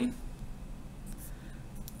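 A pen writing on notebook paper: faint, short scratching strokes.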